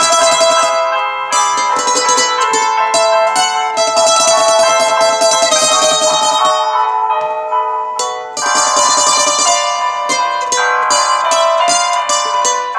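Acoustic guitar-type stringed instrument with many strings, played without singing: a picked melody over strummed chords. The playing thins out briefly just before eight seconds in, then picks up again.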